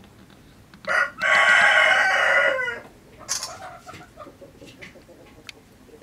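A cock bird crowing close by, one short note and then a long, harsh call that falls away at the end. A brief rustle follows.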